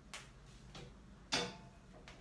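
Two sharp clicks: a faint one just after the start and a louder one about a second and a half in.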